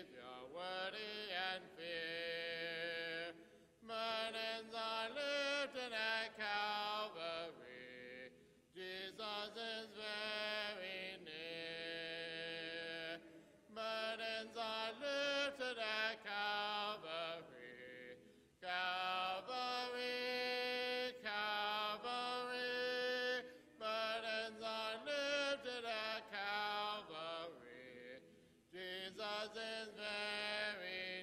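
Congregation singing a hymn a cappella, with no instruments. The voices sing line by line, with a short breath-pause between lines about every five seconds.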